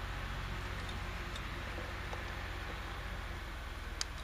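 Hand-squeezed PVC pipe cutter working through PVC pipe, giving a few faint clicks and a sharper click at the end, over a steady low hum. The blade has gone dull, so the cut is hard going.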